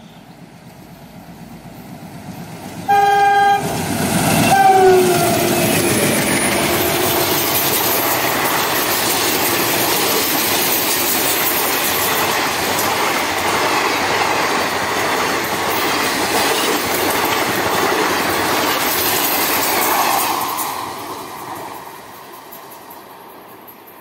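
A twin ALCO diesel–hauled express train passing at speed. The locomotive horn sounds once about three seconds in and again a second later, the second note falling in pitch as the locomotives go by. The coaches then rush past with steady wheel clatter for about fifteen seconds before the sound fades out near the end.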